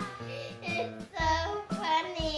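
A song with a high singing voice over instrumental backing, and a deep bass beat a little past halfway through.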